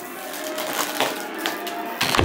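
Plastic snack bag crinkling as it is opened and handled, a run of irregular crackles.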